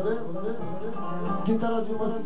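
Music with a plucked string instrument playing a continuous run of notes.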